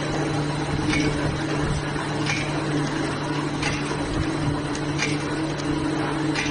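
Soap-making machinery running with a steady motor hum, and the soap bar cutter striking at an even pace, a short sharp stroke about every second and a half.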